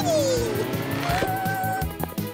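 Cartoon car sound effect of a car driving past, with a whine that falls in pitch over about half a second, over steady background music.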